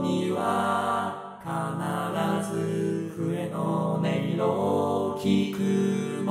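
Synthesized male voices (Vocaloid) singing unaccompanied four-part men's chorus harmony in held chords that shift every second or so, with a short dip in level about a second in.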